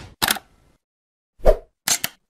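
Three short, sudden sound effects from an animated logo intro, separated by silence; the second, about a second and a half in, is the loudest.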